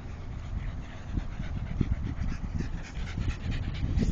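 A dog panting quickly in an even rhythm, several breaths a second, over a low rumble.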